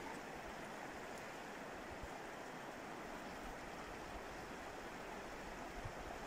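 Faint, steady rush of a shallow river flowing over a gravel riffle.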